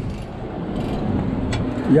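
Cat D6 dozer's diesel engine running steadily, with one short click about one and a half seconds in.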